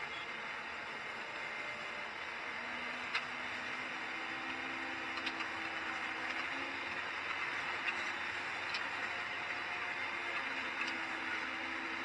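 Steady running noise of a Holmer Terra Variant 600 self-propelled slurry applicator, heard inside its cab while driving. A faint low hum comes and goes, with a few light clicks.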